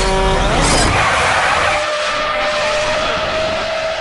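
Cartoon sound effect: a loud, noisy rush with a single steady whine that rises slightly in pitch, like a skid. It follows held background music that stops about half a second in.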